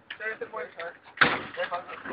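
Quiet voices talking, then a single sudden loud bang a little past halfway, followed by more talk.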